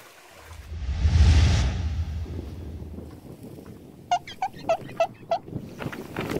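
A low wind rumble on the microphone swells and fades. About four seconds in, a bird gives five short, evenly spaced chirps in quick succession.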